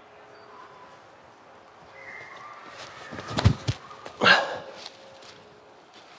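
A disc golf tee shot: a few sharp knocks and thumps about three and a half seconds in, as the throwing steps and release land, then a short sharp rushing sound about a second later.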